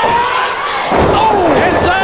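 A wrestler's body slammed down onto the wrestling ring mat with a heavy thud about a second in, over shouting voices.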